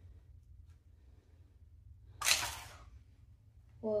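A hard plastic toy capsule being pulled open by hand, with one short, sharp burst of plastic noise about two seconds in as it comes apart.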